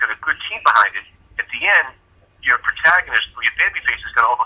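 Speech only: a voice talking over a telephone line, thin and narrow in tone, with short pauses.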